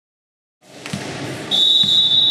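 A volleyball bounced twice on a hardwood gym floor before the serve. About three quarters of the way in, a referee's whistle starts one steady blast, the signal to serve.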